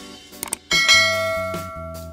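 Subscribe-animation sound effect: a couple of quick mouse clicks, then a bright bell ding that rings and fades over about a second, over background music.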